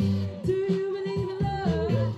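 A woman singing a pop song over a backing track with a repeating bass line. She holds one long note for about a second, then sings shorter notes that slide up and down.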